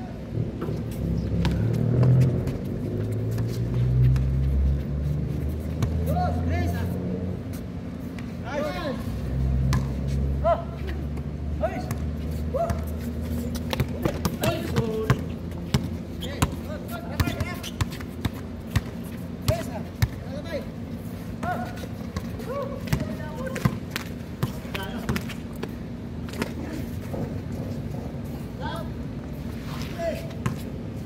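Basketball bouncing on an outdoor hard court, dribbled at about one bounce a second through the second half, with voices calling out now and then. A low rumble is loudest in the first ten seconds.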